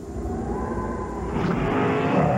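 Low car-engine rumble that swells about a second and a half in.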